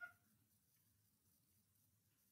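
Near silence: room tone, with one faint, very short blip right at the start.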